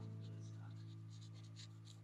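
Faint short scratches of a pencil sketching on paper, under a held chord of soft background music that slowly fades.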